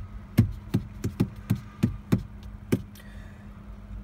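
Regular clicking from a Ford's dashboard, about three clicks a second, with the ignition on and the engine off during an oil-life reset; the clicking stops just before three seconds in. A faint steady hum runs underneath.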